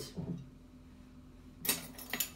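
A quiet kitchen, then a single sharp clink of a utensil against a dish near the end.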